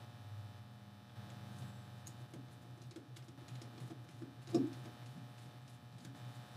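Small screwdriver and fingers working tiny screws out of a small blower fan's housing: faint clicks and handling taps, with one louder knock about four and a half seconds in.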